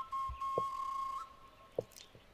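A thin, high whistle-like note from the background music score, held steady and then cutting off just after a second in, with a few faint soft taps under it.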